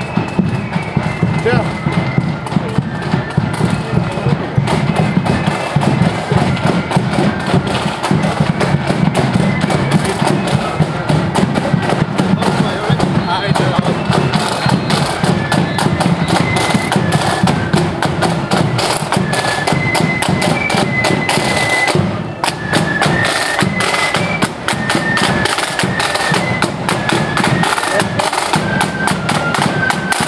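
Marching flute band playing a high, stepping melody over a steady beat of side drums and bass drum, with a short drop in volume about two-thirds of the way through.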